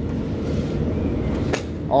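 A rooftop exhaust fan's aluminium housing tipped up on its hinge kit, with one sharp metallic click about one and a half seconds in, over a steady low rumble of rooftop machinery.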